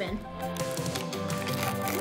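Background music, quiet and steady, with held tones.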